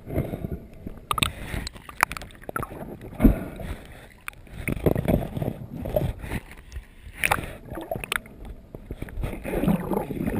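Muffled water movement heard through an underwater camera housing on a freediver, with irregular clicks and knocks and a louder thump about three seconds in.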